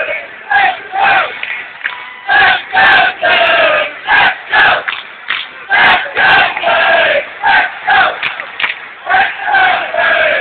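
Ice hockey arena crowd shouting and chanting in a quick, regular rhythm, many voices together in loud repeated yells about twice a second, as it reacts to a bench-clearing brawl on the ice. The sound is heard through a small phone microphone, with a cut-off top end.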